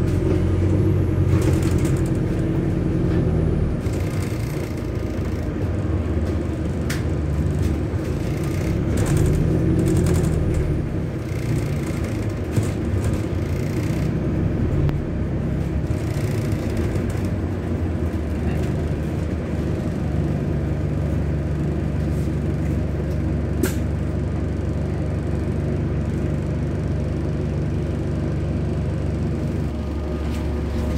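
Bus engine and drivetrain heard from inside the passenger saloon, with road noise. The low hum rises and falls in pitch a few times as the bus pulls away and slows, then runs steady near the end, with a few sharp clicks and rattles.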